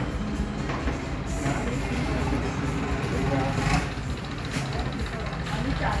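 Steady low engine hum running throughout, with indistinct voices in the background.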